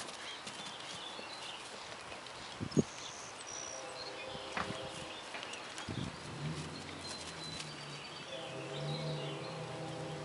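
A young foal's hooves thudding on pasture grass as it gallops, with one sharp knock about three seconds in, the loudest thing heard. A steady low hum joins from about the middle, and birds chirp.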